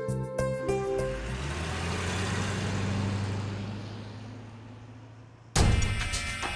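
Dramatic TV-serial background score. Repeated keyboard notes give way about a second in to a hissing swell over a low drone that builds and then fades away. Near the end a sudden loud hit starts a new, busier phrase.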